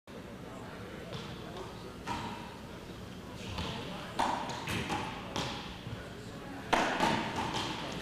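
Racquetball rally: about seven sharp, irregularly spaced hits as the ball is struck by racquets and rebounds off the court walls. The loudest hit comes near the end.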